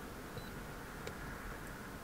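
Faint short high key-press beep from a Launch CRP123 OBD2 scan tool with its button beep switched on, then a faint click about a second in, over low background hiss.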